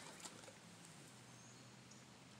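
Near silence: faint background with a low steady hum.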